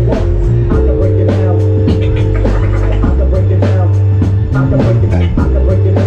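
Live instrumental hip-hop band playing loudly: a drum-kit beat with regular hits, long held electric bass notes, sustained keyboard chords and electric guitar.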